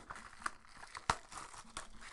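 Plastic shrink wrap crinkling and tearing as it is pulled off a sealed trading-card box, a faint run of scattered crackles.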